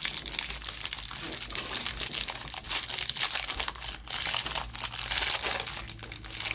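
Clear plastic shrink-wrap crinkling and tearing continuously as it is pulled off a wrapped stack of baseball cards.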